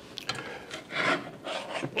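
Chef's knife blade scraping across a plastic cutting board, sweeping finely chopped cilantro into a pile in several short scraping strokes.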